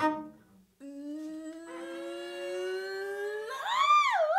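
A short struck note dies away, then a woman's voice hums a long note that slides slowly upward and, about three and a half seconds in, leaps up to a loud, high sung note.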